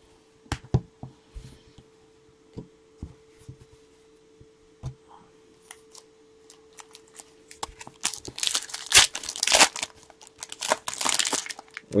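Panini Select trading-card pack wrapper being torn open and crinkling, dense from about eight seconds in, after a stretch of scattered light clicks and taps from cards being handled.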